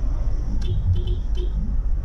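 Steady low rumble of a car's engine and road noise heard inside the cabin while driving, with a few faint short high tones in the middle.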